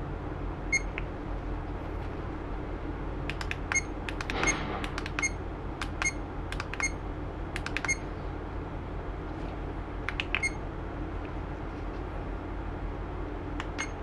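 Short, identical electronic confirmation beeps from action cameras as their touchscreen menus are tapped through, about nine single beeps at irregular intervals, with faint tap clicks. A steady low hum runs underneath.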